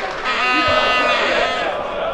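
Shouting voices of players and spectators at a football match. One long held call lasts about a second and a half.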